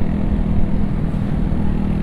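Motorcycle engine running steadily at cruising speed under way, with an even rush of wind and road noise.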